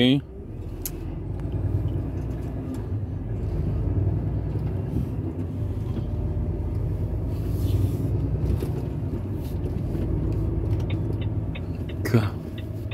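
Lorry engine and drive noise heard inside the cab as the truck is steered round a roundabout and pulls away. It is a steady low drone that swells over the first couple of seconds and then holds.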